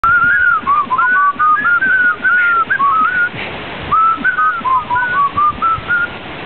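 A person whistling a tune: a clear melody of held, gliding notes that breaks off for a moment a little past halfway and then resumes.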